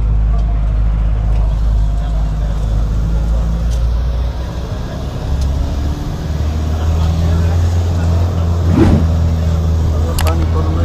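Low, steady engine drone and road noise heard inside a moving bus cabin. A little past halfway the drone steps up in pitch as the engine speed changes.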